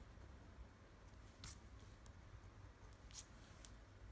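Faint scratching of a scratch-off lottery ticket's coating: a handful of short, sharp scrapes, the two loudest about a second and a half in and just past three seconds, over a low hum.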